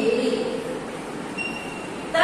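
Steady background noise with no clear source, after a woman's voice trails off at the very start.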